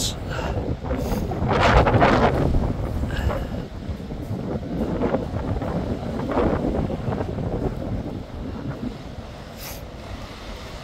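Strong wind buffeting the microphone in gusts, a low rumble that swells and falls, loudest about two seconds in.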